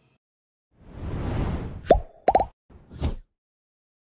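Video-editing sound effects for a pop-up subscribe button: a swelling whoosh, then three quick cartoon pops with a short falling pitch, then a brief swish near the end.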